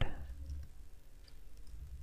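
Computer keyboard being typed on: a few faint, scattered key clicks.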